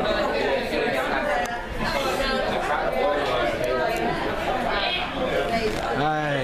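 Crowd chatter: several people talking over one another at once, with no single voice clear enough to make out words.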